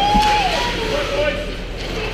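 Spectators' voices at an ice rink: one high voice gives a drawn-out shout at the start, followed by shorter calls from others, with a sharp knock about a fifth of a second in.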